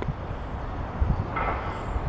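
Steady low rumble of background noise with no distinct event.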